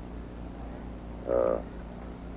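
A pause in a man's recorded speech: steady hiss and a low hum from the recording, with one short, croaky voiced sound from the speaker about one and a half seconds in.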